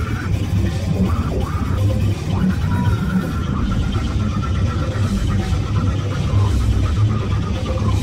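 Loud slam death metal music, dense and unbroken, heavy in the low end from down-tuned guitar, bass and drums.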